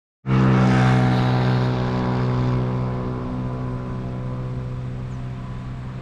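A steady low engine hum with an uneven rumble beneath it. It starts abruptly and slowly fades.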